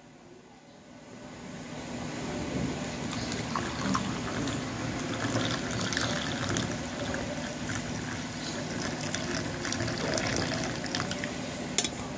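Water poured in a steady stream into a ceramic coffee mug, fading in over the first two seconds and then running on steadily, with a short click near the end.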